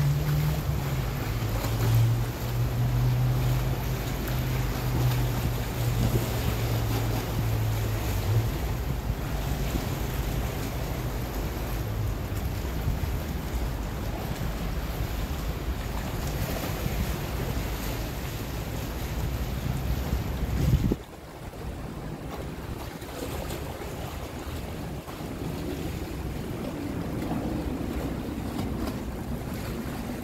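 A small motorboat's engine running with a steady low hum for the first eight seconds or so, over wind buffeting the microphone and water washing against stone steps. The wind rush cuts off suddenly about two-thirds of the way through, leaving the softer wash of the water.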